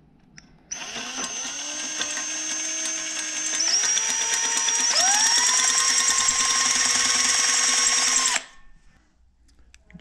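Handheld power drill with a twist bit boring the brake-line hole into a titanium bike frame's head tube. The motor whine starts under a second in, steps up in pitch twice as the drill speeds up, and cuts off suddenly about eight seconds in.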